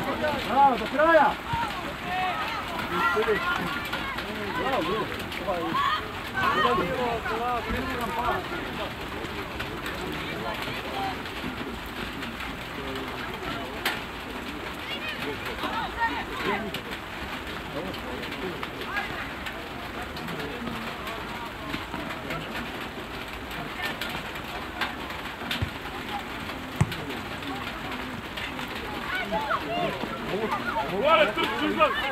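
Players and coaches shouting across a football pitch, clustered in the first several seconds and again near the end, over a steady open-air noise, with one sharp thump late on.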